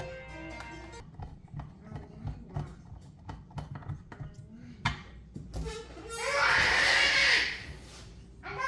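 Music for about the first second, then a run of small clicks and knocks from hands and a screwdriver handling a white plastic sensor-lamp housing. About six seconds in comes a louder rushing noise lasting about a second and a half.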